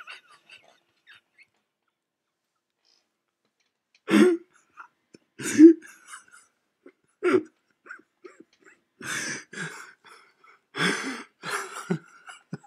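A man's stifled laughter: after a few seconds of quiet, short separate bursts of laughing breath come about a second or two apart, bunching closer together near the end.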